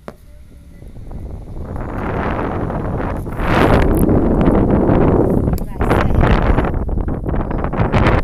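Wind rushing over a phone's microphone at a moving car's window, building from about a second in to loud from about three and a half seconds, then dropping off sharply at the end.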